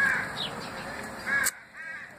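A bird calling in the background, a couple of short calls about one and a half seconds in, over faint outdoor hiss.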